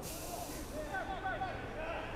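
Faint ambience of a football pitch, with a few short distant shouts about halfway through.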